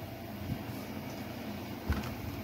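Steady low room hum with two soft thumps, about half a second in and near the end, as a Husqvarna 450 Rancher chainsaw, not running, is turned around on a countertop.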